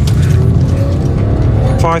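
Background music over the running engine and road noise of a police car heard from inside the cabin during a pursuit, with a faint slowly rising pitch in the middle; a voice starts near the end.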